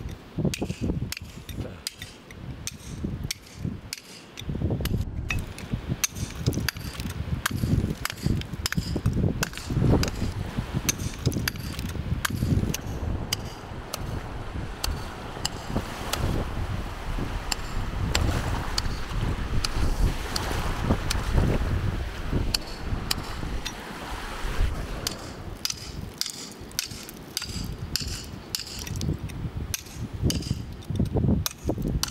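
Steel chisel driven into rock with a hand hammer, cutting around a fossil: a steady run of sharp metallic taps, several a second, over a low rumble.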